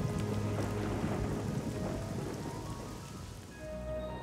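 Cartoon rain sound effect: a steady rain shower falling from a small storm cloud, over soft background music. The rain thins out near the end.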